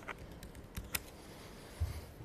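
Typing on a laptop keyboard: a few scattered keystrokes, with a soft thump near the end.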